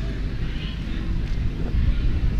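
Low rumble of wind and movement on a body-worn camera's microphone while walking, with faint, indistinct voices of passers-by.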